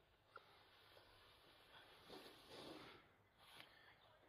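Faint swish of a child sliding down a snow-covered playground slide, about two seconds in, in otherwise near silence.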